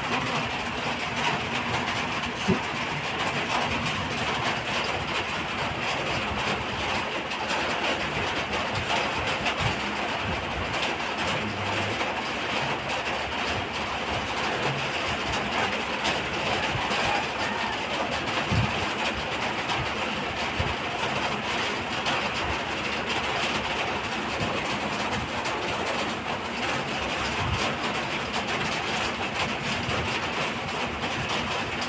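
Steady rain falling, an even hiss of continuous downpour.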